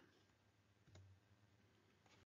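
Near silence: room tone, with one faint click about a second in.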